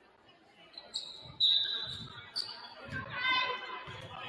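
Basketball bouncing on a hardwood gym floor, a few low thumps, with voices on the court. About a second and a half in, the loudest thing is a sharp, high-pitched steady tone lasting about a second.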